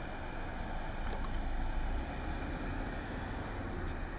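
A Ford Police Interceptor Utility SUV driving past at low speed, a steady low engine and tyre rumble that swells a little in the middle and eases off near the end.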